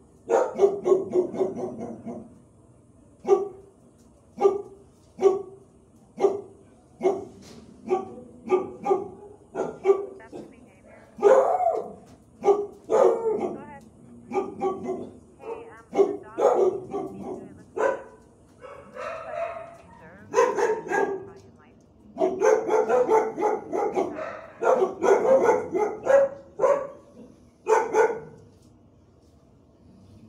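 Dogs barking in a shelter kennel block, bark after bark with short pauses, some in quick runs of several barks.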